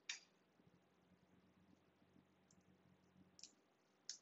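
Near silence broken by a few faint clicks of small metal construction-kit parts, nuts and bolts, being handled and fitted together by hand: one at the start and two more near the end.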